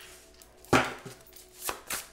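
A deck of tarot cards being handled in the hands: one short, sharp card sound a little under a second in, then two softer ones near the end.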